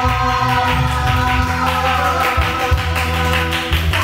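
Karaoke backing track playing over loudspeakers: electronic-sounding music with a steady beat, a bass line and held tones, with little or no singing.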